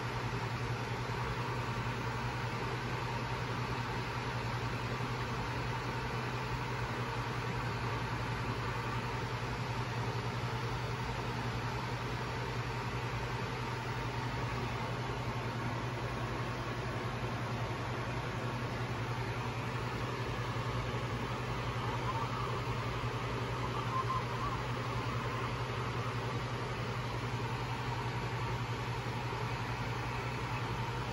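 Steady flight-deck noise of a jet in cruise at high altitude: an even rush of airflow and air-conditioning hiss over a constant low hum.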